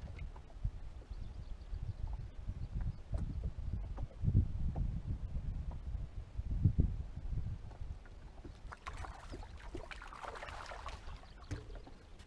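Low, steady rumble of wind and water around a small aluminium fishing boat, with two dull knocks about four and seven seconds in and a soft rustling near the end.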